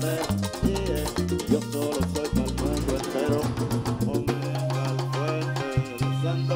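Live Dominican merengue band playing: horn lines over bass, with tambora, güira and congas driving the beat. About four seconds in, the bass settles onto a long held note.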